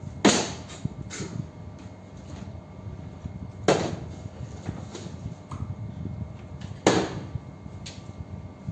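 Plastic water bottle tossed and landing on a glass tabletop three times, each landing a sharp knock followed by a few lighter taps.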